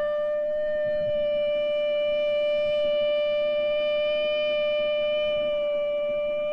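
A continuous steady tone held at one pitch, with a row of overtones above it, unchanging in loudness.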